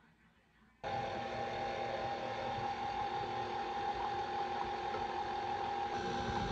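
Electric stand mixer motor running at a steady speed, mixing the cookie ingredients; it starts suddenly about a second in.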